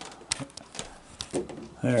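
Dry pet food being scattered by hand onto wooden deck boards: a scatter of small, sharp clicks and taps, irregular and quiet.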